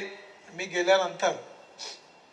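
Only speech: a man speaking a short phrase into a microphone, with short pauses around it.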